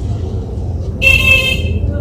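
A vehicle horn sounds once about halfway through, a short, steady, high-pitched honk lasting under a second, over a low steady rumble of traffic.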